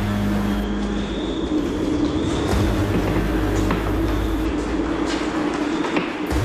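Tense drama score: a steady, sustained low drone with a few sharp percussive hits.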